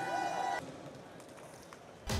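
Faint background noise in a large hall: a few faint tones fade out in the first half second, then low, steady room noise.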